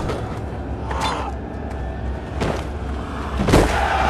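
Film fight soundtrack: a low, steady music rumble with a few short, sharp impact effects, and about three and a half seconds in the loudest of them, a heavy thud of a body falling onto sand.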